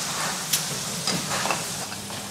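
Food frying in a pan: a steady sizzling hiss, with a few faint clicks and a low steady hum underneath.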